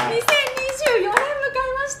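Two people clapping their hands in a short round of applause that tails off, with talking over it.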